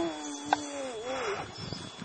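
One long howl with a sudden start that falls slowly in pitch and wavers near its end, with a single click about half a second in.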